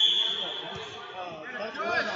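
A referee's whistle held as one steady high note, fading out just after the start, then voices and chatter echoing in a large hall.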